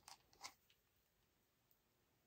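Near silence: room tone, with two faint clicks within the first half second.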